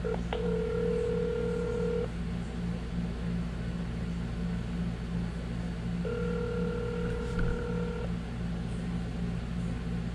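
Telephone ringback tone from a mobile phone's speaker: two rings of about two seconds each, four seconds apart, a steady low-pitched tone each time, as the called number rings and is not yet answered. A steady low hum runs underneath, and a small click comes just before the first ring.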